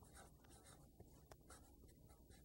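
Very faint sound of a felt-tip marker writing letters, a run of short, irregular pen strokes.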